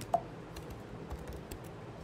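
Typing on a computer keyboard: a run of quick, light keystrokes, with one sharper key click just after the start.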